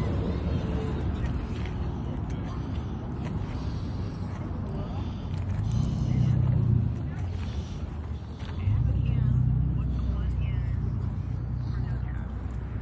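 Outdoor ambience: people talking in the background over a steady low rumble, which swells about six seconds in and again from about nine seconds on.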